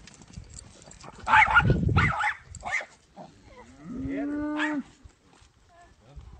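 A calf calling: a loud, rough cry just over a second in, then one held moo about four seconds in that rises at its start and then holds steady.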